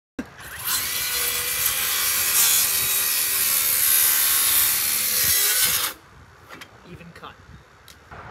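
Circular saw cutting through a wooden 4x4 post, running loud for about six seconds and then stopping abruptly. A few light knocks follow.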